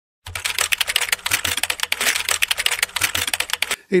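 Typing sound effect: a fast, dense run of key clicks that starts about a quarter second in and stops shortly before the end.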